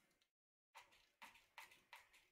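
Near silence: the sound drops out completely for a moment near the start, then comes a few faint clicks of hand handling on a tabletop.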